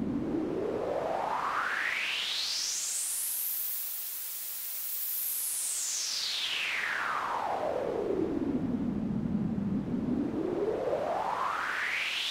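Synthesized pink noise through a narrow band-pass filter whose centre sweeps slowly up from a low hiss to a very high hiss, then back down, taking about ten seconds for the round trip. It starts climbing again near the end.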